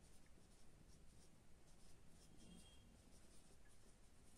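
Faint scratching of a marker pen writing on a whiteboard, a run of short irregular strokes.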